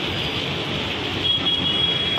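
Steady noise of road traffic and working machinery, with a thin high-pitched squeal starting a little over a second in.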